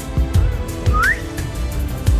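Background music with a steady beat, over which an Alexandrine parakeet gives one short rising whistle about a second in.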